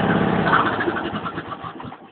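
Riding lawn mower engine shutting down: its steady running fades over about two seconds, with a few last uneven strokes, to a stop.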